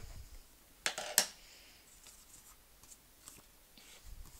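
Cardstock being handled and laid onto an inked rubber background stamp, with faint paper rustles and two sharp clicks close together about a second in.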